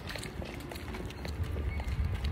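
Footsteps clicking irregularly on pavement, over a low rumble of wind on the phone's microphone.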